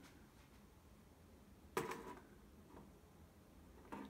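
Near silence: room tone, with one light knock a little under two seconds in.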